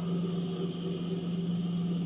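Steady low electric motor hum, as from an industrial sewing machine's motor left running at idle while the needle is not stitching.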